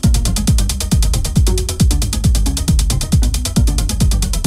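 Techno track from a DJ mix: a steady four-on-the-floor kick drum, about two hits a second, each dropping in pitch, under a fast run of dry, mechanical-sounding ticking percussion.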